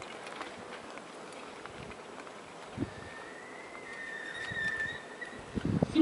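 Quiet open-air ambience with scattered faint clicks; a thin, steady high tone sounds for about two seconds from about three seconds in.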